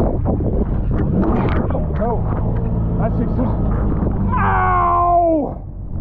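Kawasaki Ultra 310LX jet ski's supercharged four-cylinder engine running steadily while riding over chop, with a man's long yell about four seconds in that slides down in pitch.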